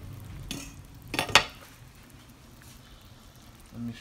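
A metal spoon stirring in a pot of beef pot roast and broth, with a few sharp clinks against the pot, the loudest just over a second in.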